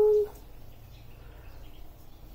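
A person's short hummed note, rising slightly in pitch, at the very start. Then only faint room tone.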